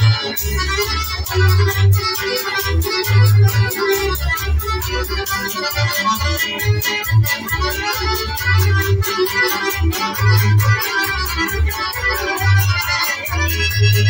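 An accordion playing a fast, busy melody over low bass notes that pulse at regular intervals.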